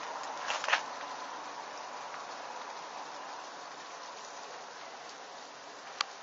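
Steady hissing background noise, with a short cluster of small clicks a little under a second in.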